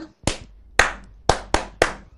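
A person clapping hands: five single sharp claps at uneven spacing, the last three coming quicker together.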